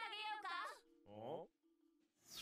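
A very high-pitched, squeaky cartoon character voice delivering a line with wavering pitch, then a short downward-gliding sound about a second in, followed by quiet.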